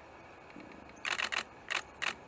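DSLR camera shutter firing: a quick burst of about four clicks about a second in, then two more single clicks, over a faint steady hiss.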